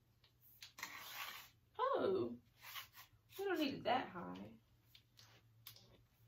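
A metal light stand being put together by hand: a brief rustle and a few light clicks as its telescoping sections and clamp are handled. A woman's voice sounds twice without clear words, louder than the handling.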